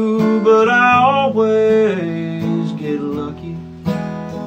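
Acoustic guitar strummed under a man's country singing. The held vocal line fades out past the middle while the chords ring on, then a fresh strum comes just before the end.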